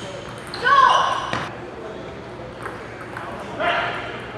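Table tennis ball clicking off paddle and table in a doubles rally. A loud, short squeal comes about half a second in, and a briefer one near the end.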